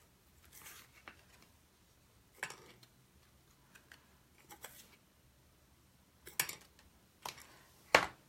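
Faint handling sounds of clear embossing powder being applied to a Versamark-stamped image: a few short, scattered rustles and light taps, a little louder near the end.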